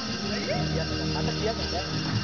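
Electronic keyboard holding steady notes as a song winds down, with several people's voices talking and calling out over it.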